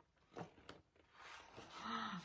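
Faint paper handling as a picture book's page is turned and a fold-out page is lifted open: two soft clicks about half a second in, then a light rustle of the paper toward the end.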